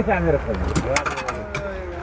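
Men's voices talking, with a couple of sharp clicks, then a long steady tone that slowly falls in pitch through the second half, like a vehicle passing by.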